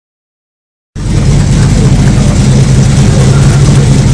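Pontiac Trans Am's V8 engine idling, loud and steady, starting about a second in.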